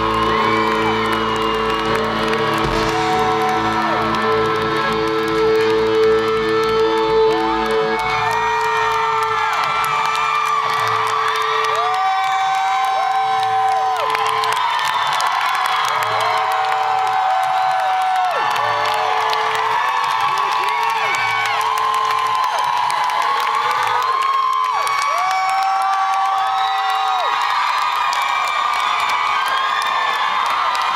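A rock band's last sustained chord rings out and fades away over roughly the first ten seconds, while a concert crowd cheers and whoops; the cheering and whoops go on after the music has died away.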